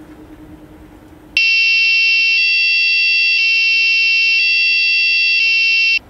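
Police siren sound effect played loudly through the homemade robot's speaker, in answer to the voice command "Polis ol" ("be police"). It starts suddenly about a second and a half in and alternates between two tones about once a second.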